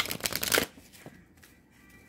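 Deck of oracle cards being shuffled by hand: a quick run of papery card riffling for the first half-second or so, then a single light tick about a second in.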